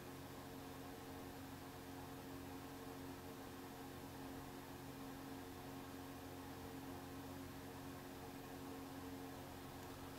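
Faint steady hum and hiss of the recording chain's noise floor, with no other sound.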